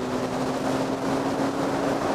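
Motorcycle engine running at a steady cruising speed, heard from the rider's seat as one even engine note under rushing wind noise.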